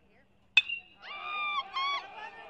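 Metal baseball bat striking the ball about half a second in: a sharp ping that rings briefly. Voices yell and cheer right after the hit.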